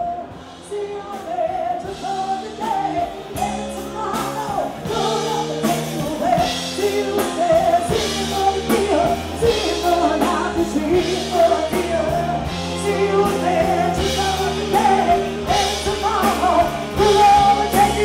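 Live rock band playing: a singer over electric guitars, drums and keyboard, growing louder over the first few seconds.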